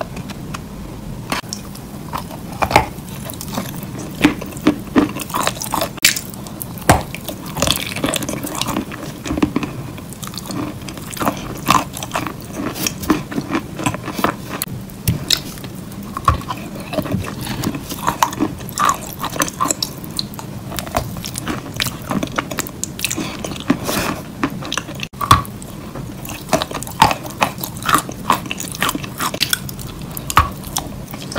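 Close-miked crunching and chewing of a gritty, clay- or sand-like mouthful: irregular sharp crunches, several a second, over a low steady hum.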